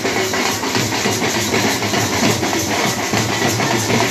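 Loud, continuous festival music carried by drums, from the drummers of a street procession.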